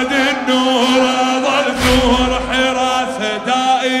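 A male reciter and a crowd of mourners chanting a Shia latmiyya in a single melodic line over a steady low held hum, with a deep thump about two seconds in.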